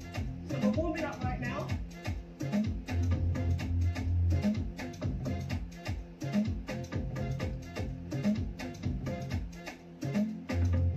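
Afro dance music with a steady, evenly repeating beat and bass, with singing about a second in.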